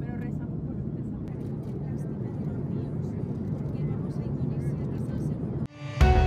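Steady low drone of an airliner's cabin noise, with voices talking faintly over it; it cuts off suddenly just before the end.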